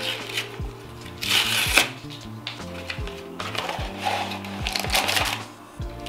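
A cardboard mailer envelope being torn open, with a loud ripping burst about a second in, followed by fainter rustling as a plastic-wrapped item is pulled out. Background music with a steady beat plays throughout.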